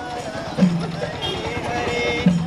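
Devotional singing with percussion: voices sing over a deep drum stroke that comes about every second and a half and a run of quick, light percussive strokes.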